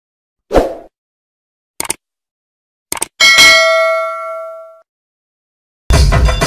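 Intro sound effects: a short hit, two quick clicks, then a bell ding that rings out and fades over about a second and a half. Drum-led music cuts in at the very end.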